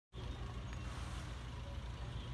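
Heavy machinery engine running steadily, a low, even rumble.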